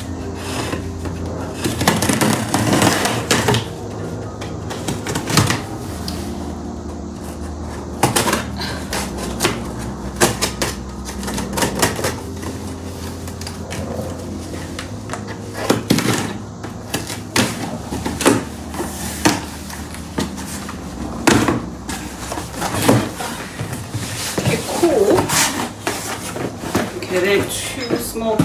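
Scissors cutting through packing tape on a cardboard box, with irregular sharp clicks, scrapes and cardboard crackling; near the end the box flaps are pulled open and a smaller box is lifted out.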